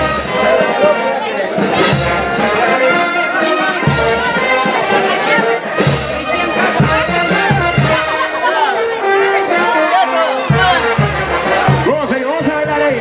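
Loud festive band music led by brass instruments playing a dance tune, with crowd voices underneath.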